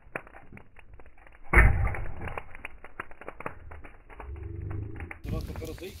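Burning charcoal in a metal grill tray being stirred with a metal rod: rapid crackling and scraping clicks, with one loud thump about a second and a half in.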